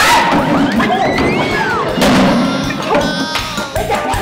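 Background music with comedy sound effects laid over it: a thud at the start and another about two seconds in, among short swooping sounds that slide up and down in pitch.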